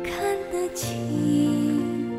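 Slow, sad background music with held notes; a new chord comes in a little under a second in.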